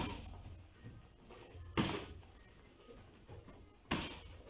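Kicks landing on a handheld kick pad: three sharp, loud slaps about two seconds apart, as front kicks are drilled repeatedly into the pad.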